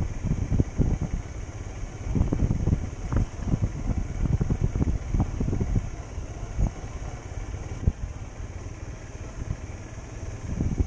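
Motorcycle riding slowly over a rough dirt road, heard from a bike-mounted camera: a low, uneven rumble with many irregular surges.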